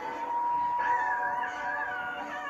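Cartoon soundtrack heard through a TV speaker: a long, held high tone, joined about a second in by a higher, wavering, howl-like tone.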